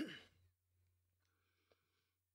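A short breathy sigh that falls away within the first half second, then near silence with a faint steady low hum and one soft click.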